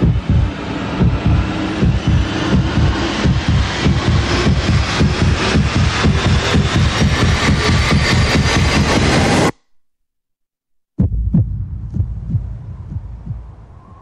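Trailer sound design: a heavy throbbing pulse that speeds up as it builds, cuts off abruptly about nine and a half seconds in, and after a moment of silence gives way to one heavy hit that fades away.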